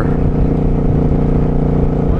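Suzuki Boulevard C50T's V-twin engine running steadily at cruising speed on the open road, an even, unchanging drone.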